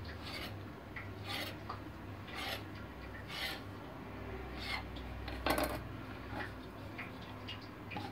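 Kitchen knife cutting thin rolled dough on a marble slab, the blade scraping the stone in short strokes about once a second, the loudest a little past halfway.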